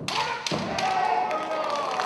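Kendo strike: a sudden stamp and a bamboo shinai hitting armour, a second sharp knock about half a second later, and a loud drawn-out kiai shout from the fencers through the rest, with a few lighter clacks of shinai.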